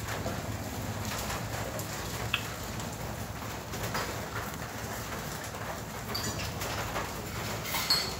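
A steady low hum with a few light clinks of plates and cutlery being gathered up from a table.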